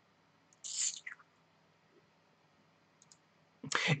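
A mostly quiet pause in a man's talk. There is a short breathy hiss about a second in and two faint clicks near three seconds, and then his voice starts again at the very end.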